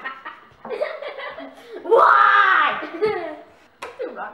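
Boys laughing and giggling, with a loud, drawn-out vocal outburst about two seconds in and a sharp click near the end.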